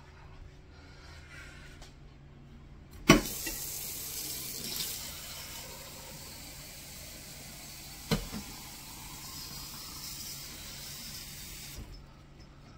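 Water running from a tap: a sharp knock about three seconds in, then a steady hiss of flowing water that stops abruptly near the end, with another knock partway through.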